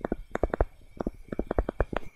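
Pen stylus knocking and scraping on a tablet screen while handwriting a word: about a dozen short, irregular knocks in quick runs.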